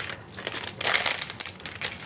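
Clear plastic cello bag crinkling as it is handled and pressed flat around a drink-mix packet, louder for a moment about a second in.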